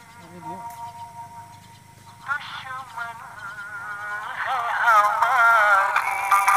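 Opening of a song: a quiet held note, then a melody line with strong vibrato that swells louder from about four seconds in.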